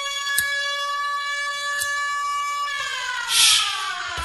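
A siren holding one steady pitch, then winding down in a falling glide near the end. Just before it dies away there is a short, loud burst of hiss.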